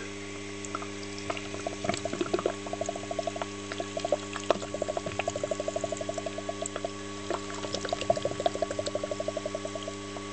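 Hydrogen-oxygen (HHO) gas from an electrolysis dry cell bubbling out of a plastic tube held under water in a bucket. It makes a rapid run of small bubbling pops, about ten a second, that starts about two seconds in and breaks off briefly about two-thirds of the way through. A steady electrical hum runs underneath.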